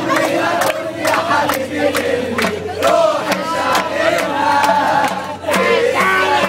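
A group of men chanting loudly together, several voices at once, over steady hand clapping about twice a second.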